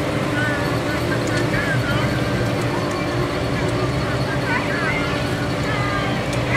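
A vehicle engine running steadily at low speed as it rolls slowly along the street, with people's voices in the background.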